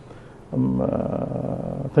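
A man's drawn-out hesitation sound, a single "eeh" held at one steady pitch for about a second and a half after a short pause, as he searches for his next word.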